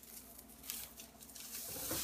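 Faint rustling and handling noises, soft scattered ticks and shuffles, from a person moving close to the microphone.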